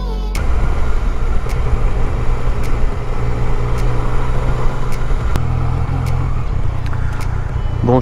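Yamaha Tracer 900 GT's three-cylinder engine running as the motorcycle rides along and slows down, mixed with wind noise on the camera.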